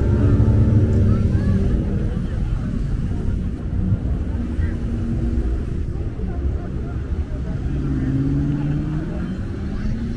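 Road traffic: a line of cars driving slowly past, their engines giving a steady low rumble, with one engine rising in pitch as it revs about eight seconds in and again at the end. Crowd voices mix in.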